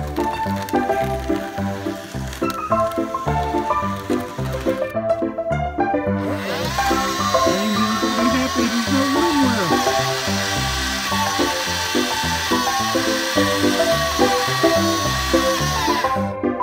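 Old-time background music runs throughout. About six seconds in, the Bachmann motorized turntable's small electric motor starts under it: a steady whine with a hiss, wavering in pitch a little a few seconds later, that cuts off at the end.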